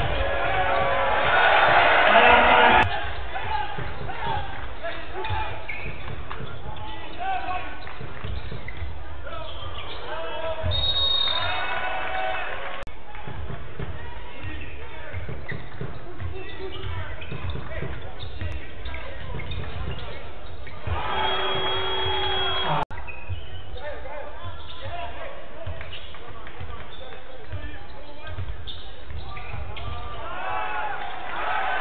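Basketball dribbled on a hardwood court in an arena, with a steady run of low bounces under crowd noise and shouting voices. The first few seconds are louder, and the sound breaks off abruptly for an instant near the end, as at a cut.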